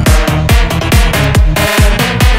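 Electronic dance remix of a Vietnamese pop song, here an instrumental stretch without vocals, driven by a steady kick drum beating about twice a second.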